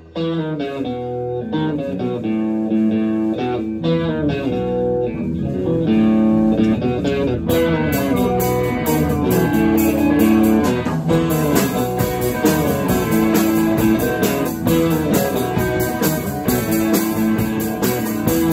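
A live rock band playing an instrumental passage with electric guitars out front. The opening seconds are mostly picked guitar notes, and from about seven seconds in the sound fills out, with cymbals and the full band.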